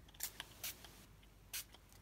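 Three short, quiet hisses of a pump spray bottle of Distress Spray Stain misting ink through a stencil onto paper.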